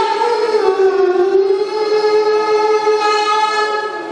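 A young man's solo voice through a microphone, chanting in a melismatic Islamic recitation style. The note slides down just after the start and is then held long and steady, breaking off at the very end.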